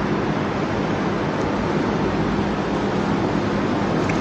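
Steady hiss-like background noise with a low, constant hum underneath, the running noise of the microphone and sound system while no one speaks.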